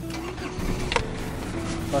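A 1996 Mazda MPV's WL-T 2.5-litre turbodiesel being started with the ignition key and settling into a steady idle, with a sharp click about a second in.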